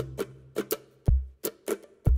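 Background instrumental music in a sparse passage: a held note fades out, then a few short, light taps and a single low note about a second in.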